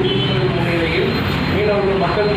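A man's voice reading aloud from a paper in Tamil, in a continuous run of speech over a steady background hum.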